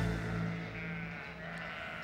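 A sheep bleating, with soft background music underneath.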